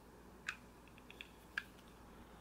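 Two faint clicks about a second apart, with a few small ticks between, as the parts of a Wismec Luxotic MF box mod's metal housing are fitted together by hand.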